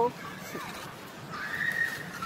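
A single high, drawn-out animal call, slightly arched in pitch, past the middle, over quiet outdoor background.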